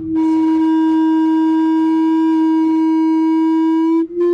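Loud, steady howl of public-address microphone feedback: one held tone at a single pitch that breaks off briefly near the end.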